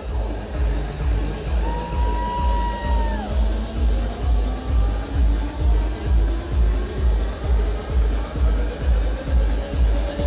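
Loud electronic dance music over a club sound system, with a steady four-on-the-floor kick drum at about two beats a second. A single held high note enters about a second and a half in and bends down near the three-second mark.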